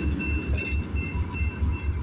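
New Mexico Rail Runner MPI MP36PH-3C diesel locomotive running while standing at the platform: a steady deep throb of about four to five beats a second, with a faint high whine coming and going above it.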